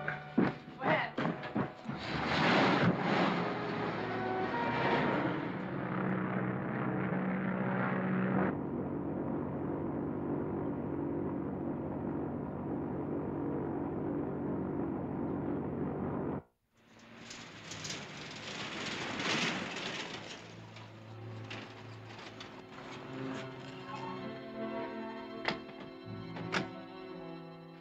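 Background film music over vehicle engine noise: a car at first, then the steady drone of a propeller airliner in flight. The sound breaks off suddenly for a moment about two-thirds of the way through.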